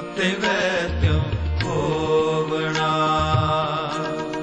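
Sikh kirtan: a devotional hymn sung in long, held notes over a steady harmonium accompaniment, with occasional low tabla strokes.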